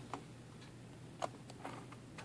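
Metal tweezers picking at the plastic seam of an HP computer mouse to dig out built-up crud, making a handful of light, irregular clicks and ticks.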